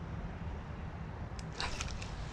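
Low, steady rumble of handling or wind noise, with a single click and then a brief rustle near the end.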